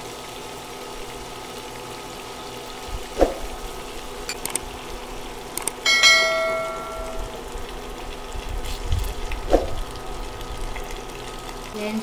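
Garlic and ginger sizzling faintly in hot oil, with two knocks of a spatula against the pan. About six seconds in, a couple of clicks and then a bright ringing notification chime, lasting about a second, from a subscribe-button animation.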